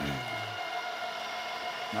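A pillar drill press running with a steady high whine, its motor and spindle turning while the quill is worked down. A short low vocal sound comes right at the start.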